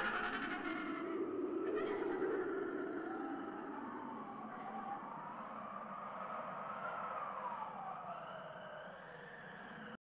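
Eerie wailing tones that rise and fall slowly in pitch, siren-like, over a low steady hum, fading toward the end.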